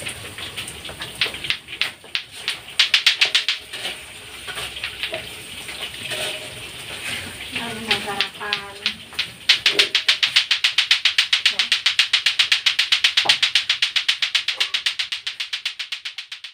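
Lato-lato clacker toy: two hard plastic balls on a string knocking together. Short bursts of clacking come first, and from about ten seconds in a fast, steady run of about six to seven clacks a second. A voice is heard in the middle.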